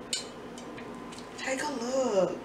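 A short noisy click right at the start, then a woman's wordless vocal sound that falls in pitch near the end, over a faint steady hum.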